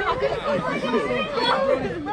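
Several young boys' voices talking and shouting over one another in excited chatter.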